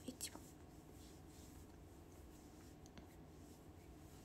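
Near silence: room tone with a low steady hum, broken by a few faint short clicks.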